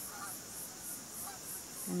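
Faint, distant geese honking a few times at a lake at dusk, over a steady high insect chirp that pulses about three times a second.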